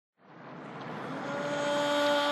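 Opening of an intro soundtrack: a wash of noise fades in from silence and swells, joined about a second in by a steady held tone with overtones.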